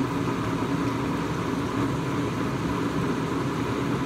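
Steady background noise with a low, even hum.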